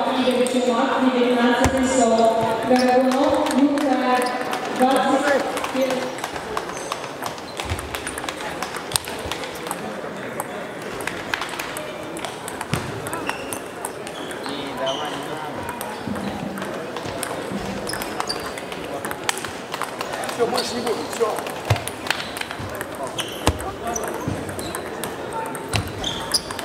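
Table tennis balls ticking off paddles and tabletops during rallies, a string of short, sharp, irregular clicks, with play at several tables in the hall overlapping.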